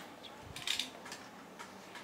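A few faint clicks and a short light rattle of small taps about half a second to a second in, over a quiet room.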